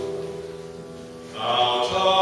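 Piano chord fading away, then about one and a half seconds in a man's voice comes in singing a long held note over the piano.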